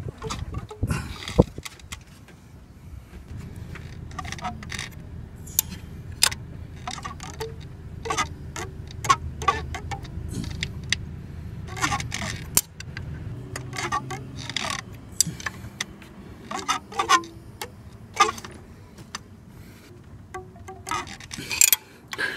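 Stretched timing belt on a Honda J-series V6 being turned over slowly by hand with a wrench on the cam sprocket: irregular clicks and short twangs like a stretched-out guitar string. The sound is the sign that the belt is near the end of its life.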